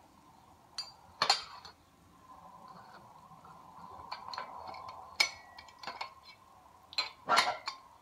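Sharp stainless-steel clinks and knocks as a spanner works the jacking-plate nut and the end cap of a membrane pressure vessel is eased out of its housing. There are a few separate knocks, the loudest about a second in and near the end, over a faint steady hum.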